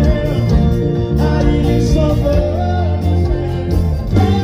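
Live band music played loud through a stage PA: guitar, bass and percussion, with a singing voice carrying the melody.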